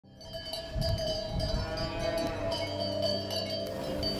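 Cowbells ringing and clanking among tethered cattle, with a few low thuds, fading in over the first second.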